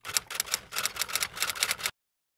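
A rapid, irregular run of sharp clicks, a typing-style sound effect laid under an animated logo card. It cuts off abruptly just before the end.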